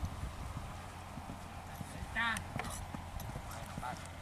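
Hoofbeats of a young grey horse cantering on a sand arena, a run of soft, quick thuds. A short, wavering voice call cuts in about two seconds in.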